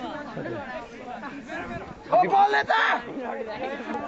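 Voices of a group of people chattering, with one louder voice about two seconds in.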